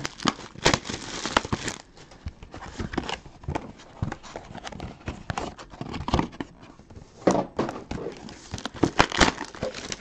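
Cardboard trading-card boxes and their wrapping being handled and opened: rustling, crinkling and scattered clicks and taps that come in bunches, busiest near the start and again later on.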